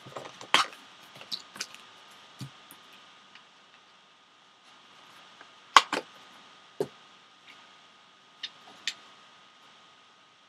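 Hands handling and opening a cardboard trading-card box: scattered sharp clicks and taps of card stock, the loudest a little under six seconds in.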